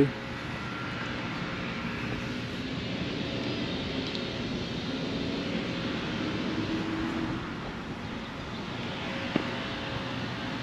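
Steady distant engine noise, swelling a little midway and easing off near the end, with one small click shortly before the end.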